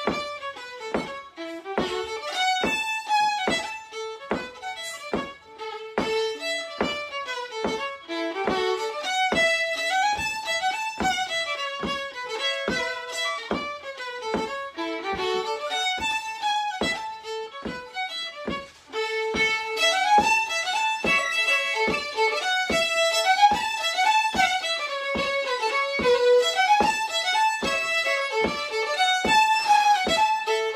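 Fiddle tune played at a lively pace, with a steady beat of sharp taps, about two a second, keeping time. One fiddle plays at first and a second fiddle joins partway through.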